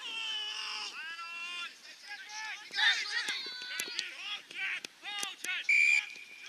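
Players shouting and calling out on an Australian rules football field, with a few sharp thuds in the middle. Near the end comes a short, loud, steady blast of an umpire's whistle.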